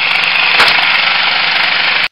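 Handheld electric power saw, most likely a reciprocating saw, running steadily as it cuts into material at floor level.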